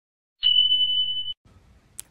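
A single steady high-pitched beep, just under a second long, that cuts off abruptly: the notification-bell sound effect of a subscribe-button animation.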